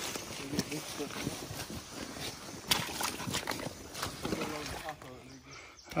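Men talking at a distance, with scattered sharp knocks and scrapes of a shovel digging into the mud-and-stick beaver dam.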